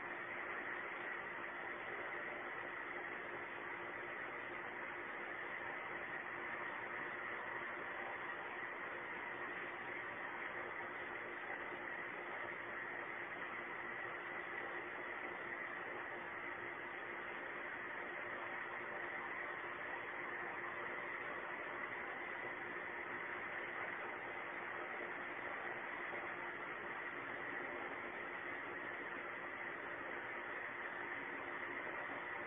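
Steady, even hiss with a faint low hum underneath and no distinct events: the background noise of a security camera's audio recording.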